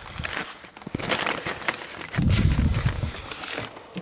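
Rustling and crinkling of a tarp and burlap wall, with scraping close to the microphone. A louder dull low thumping starts about two seconds in and lasts around a second.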